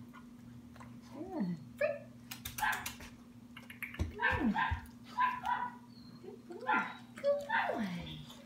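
A puppy yipping and whining in short cries that slide down in pitch, four or five times, as it reaches for a food lure held above its head.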